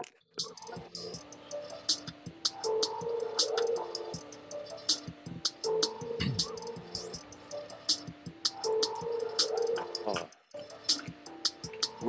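Music with a steady ticking beat over held notes. It cuts out briefly just after the start and again about ten seconds in.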